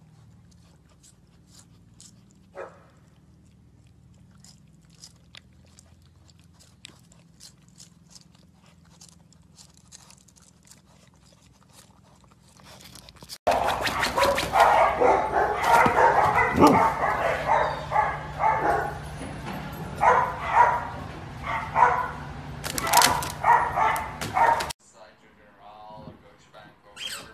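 Husky vocalizing: a loud run of short, bending yowls and bark-like calls that starts suddenly about halfway through, lasts about eleven seconds, and cuts off shortly before the end. Before it there are only faint scattered clicks.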